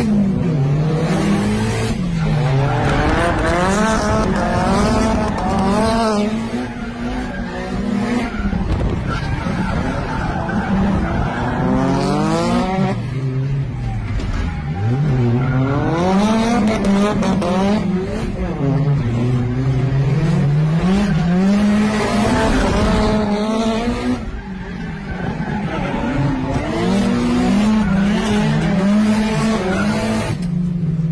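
Drift cars' engines revving hard, pitch climbing and dropping over and over as the cars slide, with tyres squealing, heard from inside a following car.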